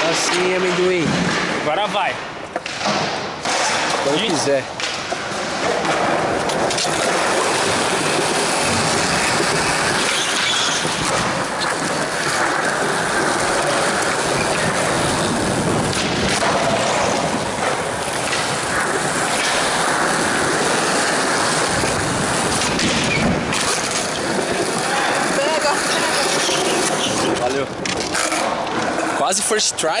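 Skateboard wheels rolling on smooth concrete, with a few sharp clacks of the board being popped and landing on flip-trick attempts.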